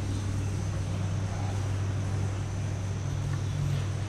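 Steady low background hum with a faint, constant high whine and no distinct events: room tone of a room with running machinery.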